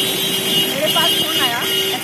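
A woman speaking Hindi, over a steady held tone from the street that breaks off briefly twice.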